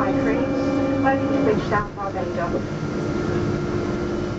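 Cabin noise of a Boeing 777 rolling out after landing: a steady drone from its GE90 turbofan engines with a low hum that drops away about one and a half seconds in, and brief voices in the cabin.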